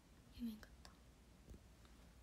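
Near silence, broken about half a second in by a brief, soft whispered murmur from a young woman, with a few faint clicks.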